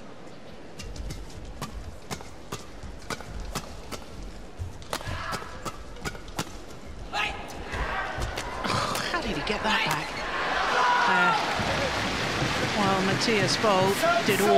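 A fast men's doubles badminton rally: sharp cracks of rackets hitting the shuttlecock about every half second, with thuds of feet on the court. Crowd noise builds through the rally, and the crowd cheers and shouts loudly once the point is won, in the second half.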